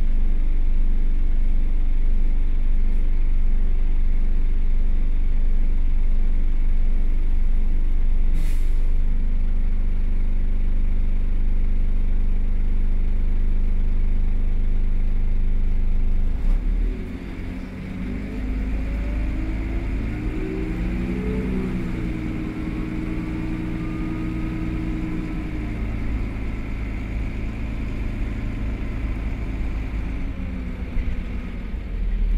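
Karosa B931E city bus heard from inside the passenger cabin: the engine runs steadily, with a short hiss of compressed air about eight seconds in. A little past halfway the sound drops and changes, and whines from the engine and gearbox rise and fall in pitch for several seconds.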